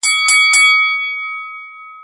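Boxing ring bell struck three times in quick succession, the ringing fading out slowly afterwards, signalling the start of the round.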